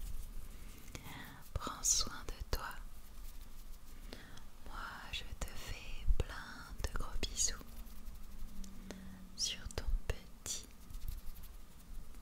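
Close-up whispering into a microphone, soft breathy syllables coming in short spells, with scattered small clicks between them.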